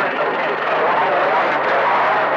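CB radio receiver on channel 28 carrying a weak, unintelligible transmission: a faint voice buried in steady static hiss.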